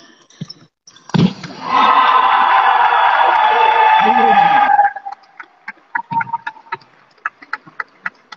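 A badminton racket smashes a shuttlecock about a second in. A loud shout follows, held for about three seconds and falling slightly in pitch at the end. After it come short shoe squeaks and light taps on the court floor.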